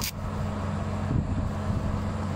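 Yamaha Sniper 155's single-cylinder engine idling steadily in neutral, with one sharp click right at the start.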